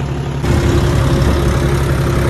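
John Deere 5310 GearPro tractor's three-cylinder diesel engine running steadily under load while pulling a laser land leveller, heard from the driver's seat; it gets a little louder and rougher about half a second in.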